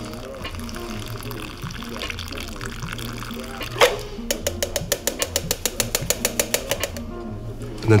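Shaken cocktail poured in a thin stream from a metal shaker tin through a fine-mesh strainer into an ice-filled glass, over background music. About four seconds in there is a sharp knock, followed by a rapid run of light ticks that fade out.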